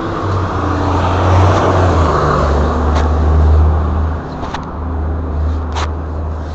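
Road traffic on a city street, a vehicle going by with a swell of noise about one to two seconds in, under a heavy low rumble from the body-worn camera rubbing against clothing. A few sharp knocks come from the camera being handled, the clearest near the end.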